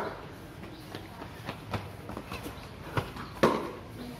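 A few irregular sharp knocks and taps on a hard tiled courtyard, like footsteps and a cricket ball or bat striking the tiles. The loudest knock comes a little before the end.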